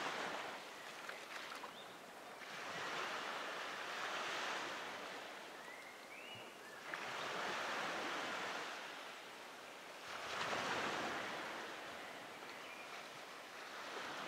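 Sea waves washing in, a noisy hiss that swells and fades in slow surges about every three seconds.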